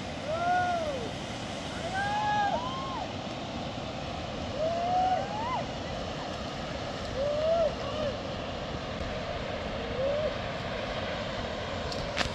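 A mountain river rushes steadily. Over it, a person's voice calls out several times in long, drawn-out shouts, each rising and falling in pitch.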